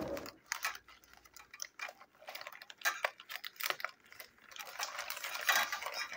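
Black plastic mailing bag crinkling and rustling as it is handled and pulled at, an irregular run of small crackles and clicks that grows denser near the end.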